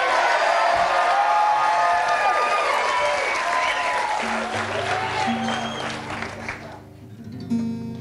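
Studio audience cheering and applauding, dying away over the first six seconds or so. From about four seconds in, an acoustic guitar is strummed, its chords ringing on; the guitar is out of tune.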